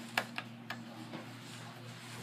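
A few light clicks and taps from the phone being handled and carried, over a steady low hum.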